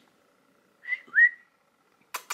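A woman whistling through pursed lips to call her dog: two short high notes about a second in, the second sliding up in pitch.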